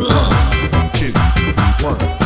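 Jungle dutch electronic dance remix: a fast, steady beat with bass notes that glide down in pitch several times a second.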